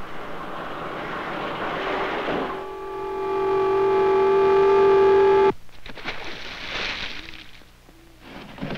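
Steam hissing, then a steam whistle on a salvaged old boiler blowing one steady note for about three seconds before cutting off abruptly: the boiler is raising steam and holding up under its first trial.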